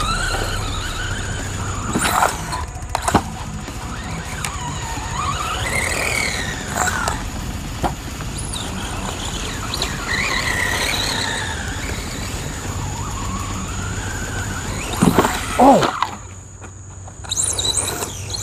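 Electric 1/14-scale RC truggy's motor and drivetrain whining, the pitch rising and falling over and over as the throttle is worked. A few sharp knocks come about two and three seconds in, and again just before the end.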